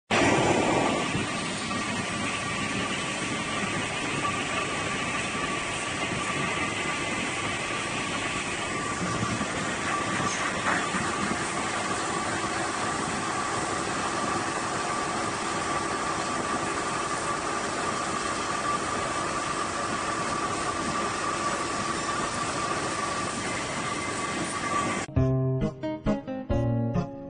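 Rotary veneer peeling lathe running, its knife peeling a thin veneer sheet off a turning log: a steady mechanical noise with a faint steady whine. Guitar music comes in about a second before the end.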